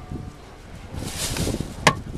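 Wind buffeting the microphone in a blizzard: an uneven low rumble that swells into a louder rushing hiss just past halfway, with one sharp click shortly before the end.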